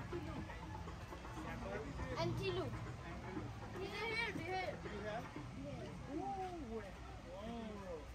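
Children's voices talking and calling, not clearly worded, over a low steady background hum.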